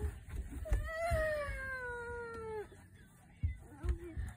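A toddler's long whining cry, held for about two seconds and sliding slowly down in pitch, as she reaches for a fish held out of her reach.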